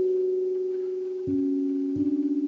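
Steel tongue drum played with felt mallets: a note rings on and fades slowly, then a lower note is struck a little past halfway. The pure, bell-like tones overlap and sustain.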